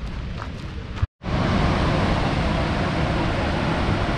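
Steady roar of Montmorency Falls, a high waterfall, heard as an even rushing noise with wind on the microphone. It cuts in suddenly about a second in, after a brief dropout, replacing a quieter outdoor wind rumble.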